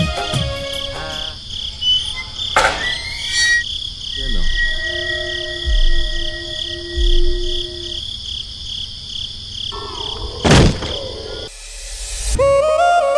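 Crickets chirping steadily in a pulsing high drone under a sparse musical interlude: the song fades out early, then two whooshes, a few low booms and some held synth notes. The chirping stops just before the end.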